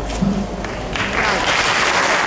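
Audience applause breaks out about a second in and swells into steady clapping as a spoken reading ends.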